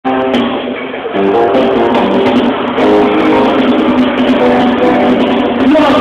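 Loud live concert music played over a venue's sound system: held instrumental notes and chords that change every second or so.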